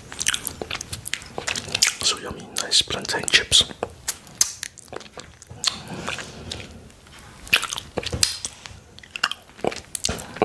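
Close-miked chewing and crunching of plantain chips, in irregular crisp crunches with wet mouth sounds, and fingers being licked. It goes quieter for a moment a little past the middle.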